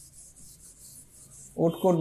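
Stylus rubbing across the glass of an interactive touchscreen board while writing: a faint, scratchy hiss in quick strokes. It gives way to a man's voice about a second and a half in.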